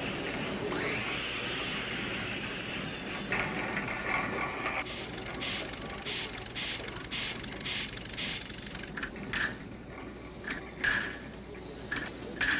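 Small machine mechanism running among ping-pong balls: a steady whirring at first, then a run of sharp clicks about two a second, breaking into irregular louder clicks near the end.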